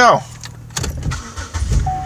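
A car's low rumble heard from inside the cabin, growing louder about a second in.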